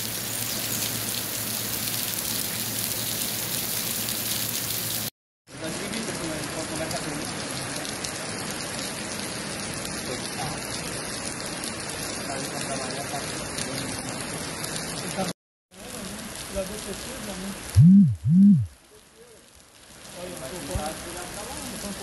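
Steady hiss of heavy rain and running floodwater, with faint voices in the background and two brief dropouts. Shortly before the end come two short, loud, low blasts about half a second apart.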